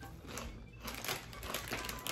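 Crunchy potato chips being chewed, with the foil chip bag crinkling in hand: a run of irregular short crackles.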